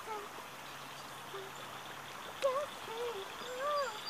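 Steady rush of a shallow creek flowing over ripples. From about halfway through, a girl's voice hums a wordless tune with held, gliding notes.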